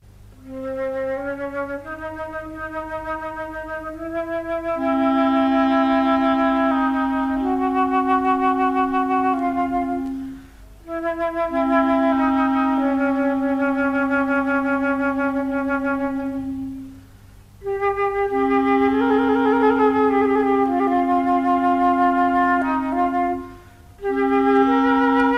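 Wind instruments of a chamber ensemble play a slow melody over long-held low notes, starting about half a second in. The melody comes in three phrases with brief breaks between them, and the upper line wavers in vibrato in the last phrase.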